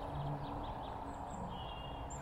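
Outdoor ambience: a low steady rumble with a few faint high bird calls, and a thin high whistle near the end.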